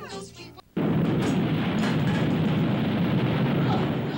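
A short laugh, a brief hush, then an explosion sound effect cuts in suddenly about three-quarters of a second in and carries on as a loud, steady rumbling noise.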